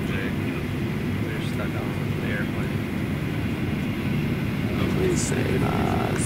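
Steady cabin noise of a jet airliner: an even, low rumble with a hiss of airflow over it.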